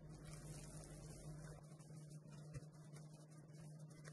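Very faint mixing of soft dough with a silicone spatula in a glass bowl, over a low steady hum; close to silence.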